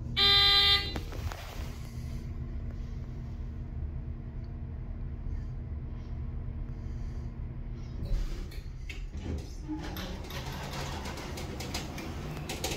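Hydraulic elevator: a loud, flat electronic beep just under a second long right at the start, then a steady hum from the running car that stops about eight seconds in. Clicking and rattling follow as the car comes to rest.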